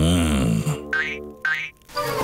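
Cartoon soundtrack: music with comic sound effects, a wobbling, bending tone at the start, then two short rising swoops about a second in and half a second later, before it drops away near the end.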